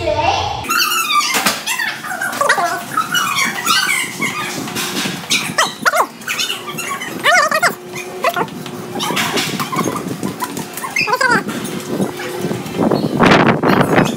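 Children's high-pitched, wordless squeals and yelps, short arching calls over and over, with the slap of their sandals on a tiled floor.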